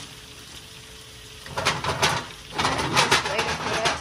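Butter and chopped onions sizzling in a stainless steel skillet on a gas burner. The sizzling is faint at first and grows louder and crackly from about a second and a half in, as the pan is shaken on the grate near the end.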